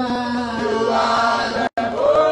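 A congregation singing a worship chorus together in long held notes, one voice on a microphone leading. The sound cuts out for a moment near the end.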